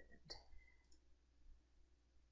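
Near silence with a single faint computer mouse click about a third of a second in.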